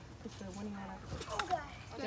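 Faint voices of kids talking at a distance, with a small click about one and a half seconds in.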